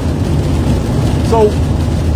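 Steady low road and engine rumble inside a van's cabin at highway speed, with rain beating on the van.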